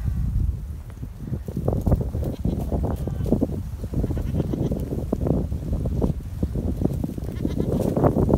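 Goats bleating repeatedly over a steady low rumble.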